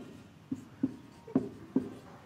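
Marker pen writing on a whiteboard: about four short, separate strokes over two seconds.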